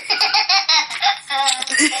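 A toddler laughing hard: a fast run of short, high-pitched bursts of laughter, with a brief catch about three-quarters of the way through before the laughing goes on.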